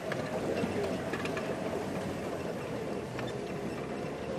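Game-drive vehicle's engine running steadily as it drives along.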